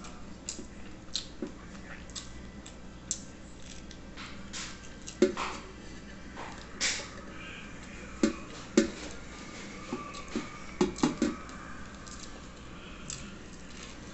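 Close-up mouth sounds of eating mocotó (cow's-foot stew) with farofa by hand: chewing with scattered wet smacks and clicks, several close together about eight to eleven seconds in.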